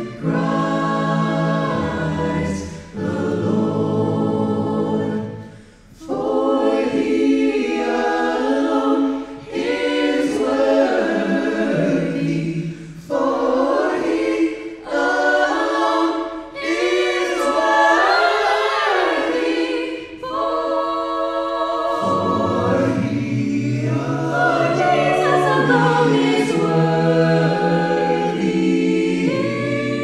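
Small mixed-voice vocal ensemble, women and men, singing a cappella in harmony into handheld microphones. The song moves in phrases with short breaks between them, over a sung bass line.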